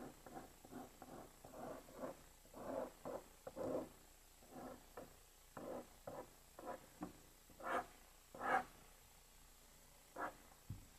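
Pen drawing on paper: a string of short scratching strokes, about two a second, with the two loudest near the end.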